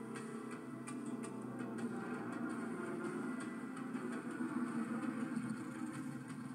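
Motorcycle engine running on a film trailer's soundtrack, heard through a television speaker, with faint irregular ticking over the engine.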